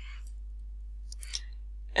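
A computer mouse clicks once, about a second and a half in, over a steady low hum from the recording setup.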